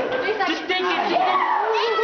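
Several young people's voices talking and exclaiming over one another in excited chatter.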